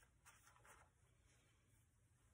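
Near silence, with a faint rustle of paper pages being handled in the first second.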